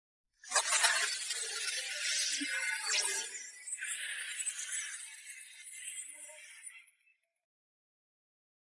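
Animated title-logo sound effect: a sudden burst of bright, hissing noise about half a second in, a sharp crack about three seconds in, then fading away and gone before seven seconds.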